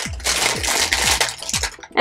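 Thin clear plastic packaging bag crinkling and rustling in the hands as a pair of earrings on a card is pulled out of it, over background music with a steady beat.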